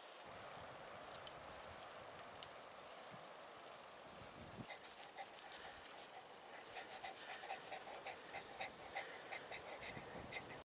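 Beagle panting close by, quick even breaths about three a second that grow stronger in the second half.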